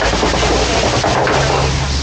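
Open-sided safari truck driving, a loud steady noise of the ride, with a low engine hum coming in about one and a half seconds in.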